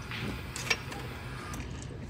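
A single light click about two thirds of a second in, over a faint steady low hum.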